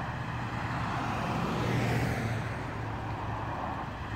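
A van driving past on the highway: tyre and engine noise swells to a peak about halfway through, then fades as it goes by.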